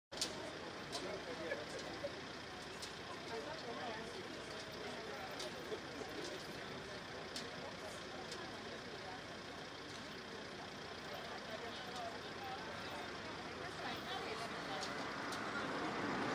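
Street ambience of traffic noise and people talking in the background, with sharp metallic clicks every second or so from a steel chain and padlock being fastened on a metal gate.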